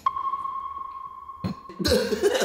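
Editor's censor bleep: one steady, high-pitched beep laid over a spoken line, held for nearly two seconds and cut off suddenly.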